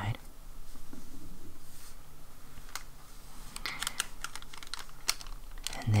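Hands handling small erasers and a plastic-bagged eraser pack on a tabletop: a soft rustle, then a few light clicks and taps, most of them bunched together a little past the middle.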